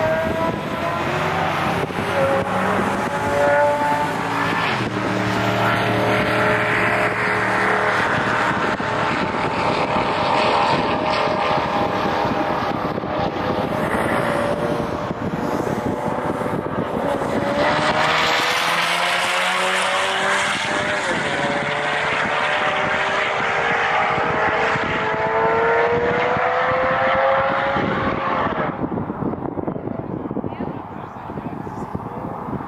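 Car engines being driven hard, with more than one car running at once. Their pitch climbs again and again and drops back at the gear changes.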